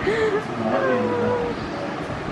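A young girl's voice making a wordless, drawn-out vocal sound, held for about a second and sliding slightly down in pitch.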